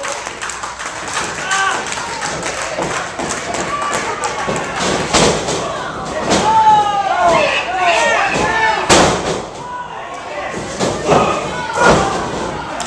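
Wrestlers' bodies hitting the canvas of a wrestling ring, several sharp thuds with the loudest about nine seconds in, among shouting voices.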